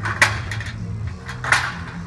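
Wire retaining rods of an evaporative cooler's pad frame being pulled out through the holes in the aluminium frame: two sharp metal clinks with a brief scrape, one about a quarter second in and one about a second and a half in, over a steady low hum.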